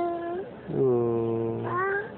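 A toddler's drawn-out whimpering whine, followed by a deeper adult voice holding a long wordless 'mmm' that rises at the end like a question.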